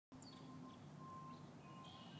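Near silence, with a faint steady hum and a faint thin tone that comes and goes.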